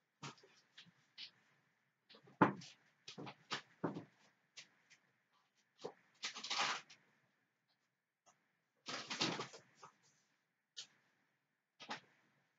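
Doll bedding and small items being handled and put in order: a string of light knocks and clicks, with two longer bursts of fabric rustling about six and nine seconds in.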